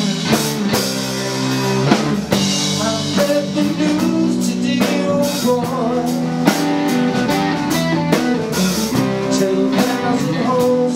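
Live blues-rock band playing an instrumental passage: electric guitars, bass guitar and a drum kit keeping a steady beat, with a guitar line of bent notes above.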